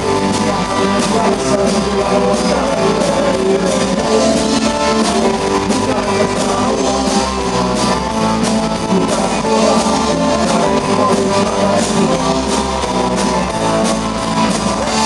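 Rock band playing live with amplified electric guitars, bass guitar and a drum kit keeping a steady beat.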